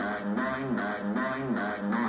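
A synthesised computer voice repeating one word, "nine", over and over in a loop about twice a second, as in "grounded for nine nine nine…". It plays through a computer's speakers.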